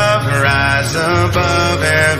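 Music: a voice singing a slow worship song with long held notes over acoustic guitar.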